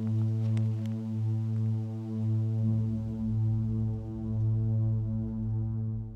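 Low, droning bass tone from a film score, with a stack of overtones, slowly swelling and ebbing; a deeper rumble joins it about halfway through, and it begins to fade right at the end.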